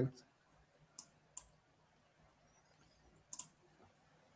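A few sharp computer mouse clicks: one about a second in, another just after, and a quick pair near the end, with little else between them.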